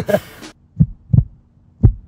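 Heartbeat sound effect: low double thumps, lub-dub, about one beat a second, starting just under a second in.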